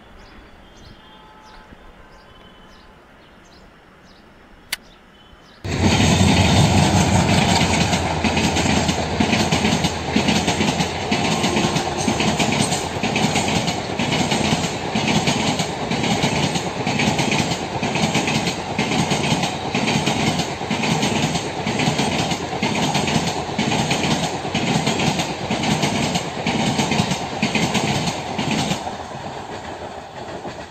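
Faint chirps for the first few seconds, then, about six seconds in, the loud sound of a passenger express's coaches passing at speed starts suddenly. The wheels clatter over the rail joints in a steady rhythm, a little over one beat a second, and fade near the end as the train moves away.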